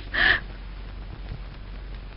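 A short raspy vocal sound about a quarter second in, then only a low hiss with a steady low hum.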